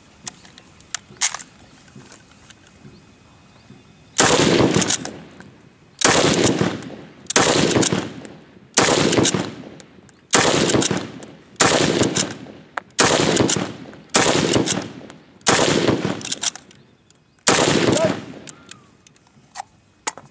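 .303 Lee-Enfield bolt-action rifle fired rapidly: about ten loud shots, one every second and a half or so, starting about four seconds in, each followed by an echo that fades over about a second. Faint clicks come before the first shot.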